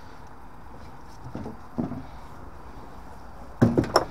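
The front casing of a Vaillant ecoTEC Pro boiler being unclipped and pulled off: a couple of faint knocks, then a loud clatter near the end as the panel comes away.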